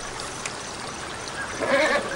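Steady background hiss of outdoor ambience, with a brief murmured, voice-like sound near the end.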